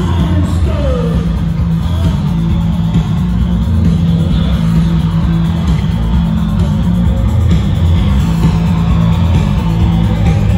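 Live post-punk band playing an instrumental stretch: bass, electric guitars and drums loud and bass-heavy through the PA, heard from within the audience.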